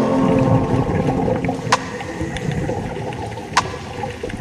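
Underwater sound picked up by a diving camera: an uneven low rumbling wash of water with a few sharp clicks, one about a third of the way in and one near the end. The tail of a music track fades out at the start.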